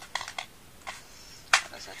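Small cardboard Jelly Belly box being handled and opened: a few light crackles and taps, then one sharp snap about one and a half seconds in as the box comes open.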